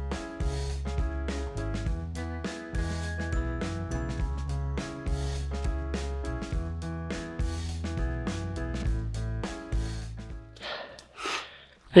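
Background music with a bass line and a regular beat, stopping about ten and a half seconds in.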